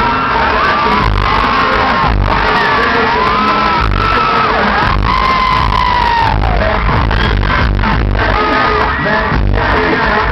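Live pop/R&B concert music over a large PA: a heavy bass beat with a singing voice gliding up and down, heard loud from within the audience.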